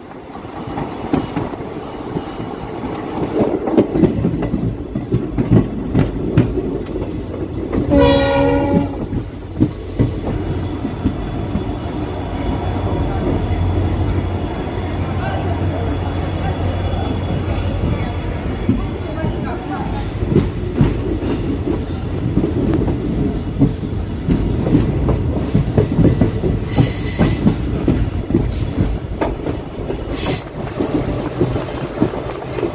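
Passenger train running on the track: a steady rumble with the wheels clicking and clacking over the rail joints. About eight seconds in, a train horn sounds once for about a second.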